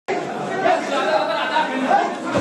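Crowd chatter: many voices talking over one another at once in a packed hall, a steady babble.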